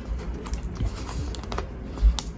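Clear plastic binder pocket pages being handled as sleeved photocards are slid into the pockets: plastic rustling with a run of small, sharp clicks and ticks.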